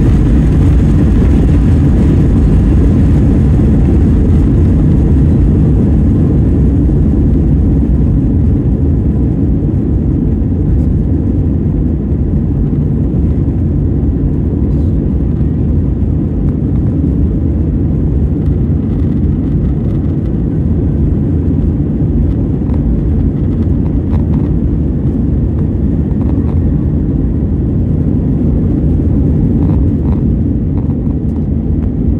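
Airbus A320 jet engines at takeoff power, heard from inside the cabin as a loud, steady rumble during the takeoff roll.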